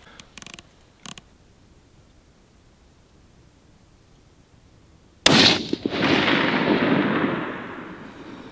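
A single shot from a Sig Sauer Cross bolt-action rifle about five seconds in, sharp and loud, followed by a long echo that dies away over about two seconds. A few faint clicks come near the start.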